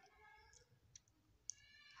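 Near silence: room tone, with two faint short clicks about one and one and a half seconds in.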